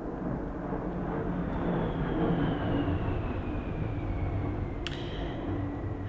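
A steady low rumble with a faint whine that slowly falls in pitch through the middle, and a single sharp click near the end.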